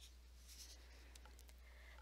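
Near silence: faint room tone with a steady low hum and one faint tick about a second in.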